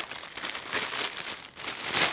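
Clear plastic bag crinkling and rustling as a belt is pulled out of it: a run of irregular crackles.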